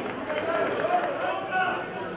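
Men's voices shouting and calling out during open-air football play.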